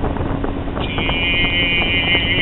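Steady road and engine noise inside a car's cabin, with a low hum throughout. A high, slightly wavering tone joins about a second in and holds.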